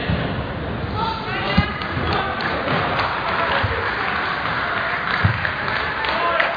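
Busy sports-hall hubbub: many voices talking at once, with two dull thuds, one about a second and a half in and one near the end.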